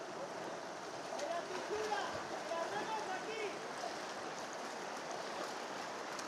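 Fast-flowing river water rushing steadily, with people's voices calling over it in the first half.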